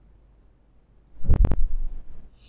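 Handling noise about a second in: two quick knocks and a low thudding rumble as the sheet of paper is shifted by hand on the work surface.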